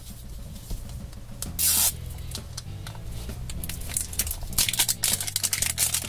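Wrapper layer being peeled and torn off an LOL Surprise ball, with one loud tearing rip about a second and a half in, then a run of quick crinkling rips near the end.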